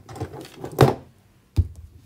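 Handling sounds at a worktable: a short, sharp noise a little under a second in, then a sharp knock about a second and a half in, as steel jewelry pliers are put down beside a brass lace-edge bezel cup.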